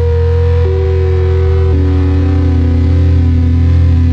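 Electronic beat in a drumless breakdown: a heavy sustained bass under held synth tones that step to a new note about half a second in and again near two seconds.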